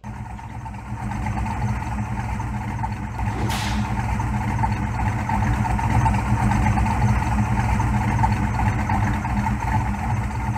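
Ford Windsor 302 V8 stroked to 347 cubic inches, idling steadily through aftermarket headers and a custom dual exhaust with Flowtech mufflers. The note comes up over the first second or so and then holds steady. There is one short hiss about three and a half seconds in.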